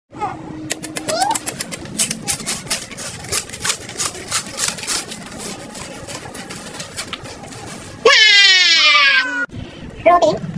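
Crisp snack being bitten and chewed close to the microphone: irregular crunches, a few a second. About eight seconds in, a loud high-pitched wavering sound that falls slightly in pitch sounds for just over a second, then cuts off.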